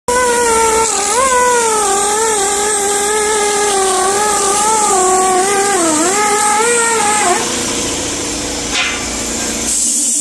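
Die grinder with a sanding disc whining against a stainless steel flange, its pitch sagging and recovering as it is pressed into the work. The whine stops about seven seconds in, leaving a hiss that dies away near the end.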